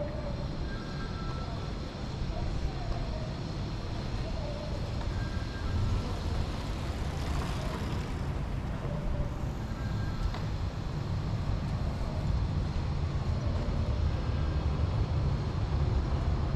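Street ambience of a quiet city side street: a steady low rumble of distant traffic, with a vehicle going past about halfway through.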